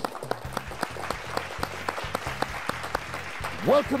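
Applause, many hands clapping steadily in a studio, with a man's voice beginning near the end.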